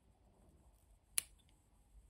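Small metal scissors snipping a thread once: a single sharp click a little past halfway.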